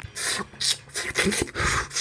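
A run of short rasping, rubbing noises, about six in two seconds.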